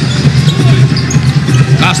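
Basketball arena sound during live play: steady crowd noise with a basketball being dribbled on the court.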